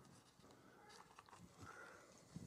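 Near silence: room tone with a few faint ticks.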